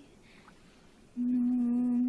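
A woman humming a slow, wordless lullaby-like tune in long held notes: about a second of quiet, then one long low note begins.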